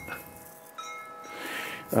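Wind chimes ringing: several overlapping sustained tones at different pitches, with a fresh one sounding about a second in.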